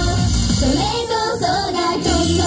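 A female idol group sings a J-pop song live into microphones over a pop backing track. The deep bass and drums drop out for about the second half, leaving the voices over lighter accompaniment, then return right at the end.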